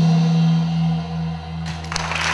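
A live band's closing chord ringing out and fading as the song ends, a low note held, with a short sharp hit near the end.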